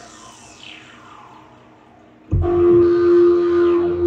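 Access Virus TI2 synthesizer playing the PointCldRD preset: a note's tail fades out with falling sweeps, then a little past halfway a new loud note starts, holding one steady tone with falling glides above it.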